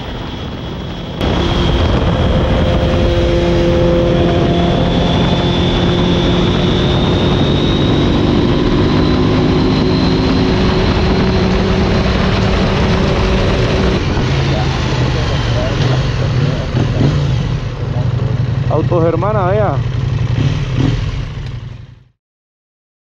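Motorcycle riding at road speed, with engine drone and wind rush heard on the onboard camera's microphone. The sound gets suddenly louder about a second in. A brief wavering, warbling tone comes through near the end.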